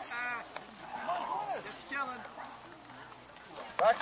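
Faint voices talking in the background, with one light tap about half a second in.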